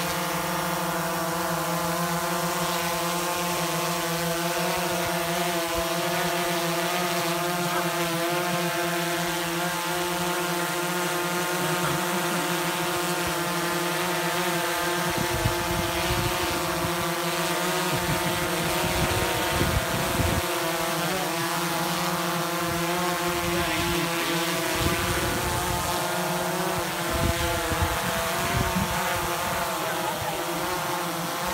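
DJI Phantom quadcopter hovering close by: its four propellers and motors make a steady buzzing drone of several pitches, which wavers slightly as the craft adjusts its position.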